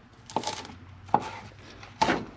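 Chef's knife chopping parsley on a plastic cutting board: a few separate knife strikes, the sharpest about a second in.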